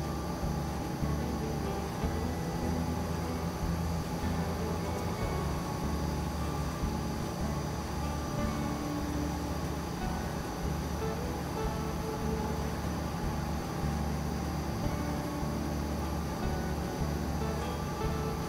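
Rubasse near-infrared coffee roaster running empty at its preheat setting, with a steady hum from the exhaust fan and drum drive, a low drone with a few fixed tones above it, as the machine holds its temperature at about 160 °C.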